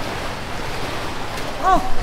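Steady rush of running water, with a brief spoken 'oh' near the end.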